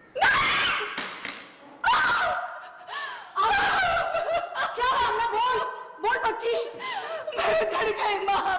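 Women's excited cries and laughter. A sudden loud high cry comes just after the start and another about two seconds in, then two women laugh and exclaim together without a break.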